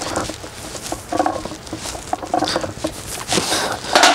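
A lifter working through a set of banded close-grip barbell bench presses: breathing and the noise of the loaded bar and rack, coming in irregular bursts.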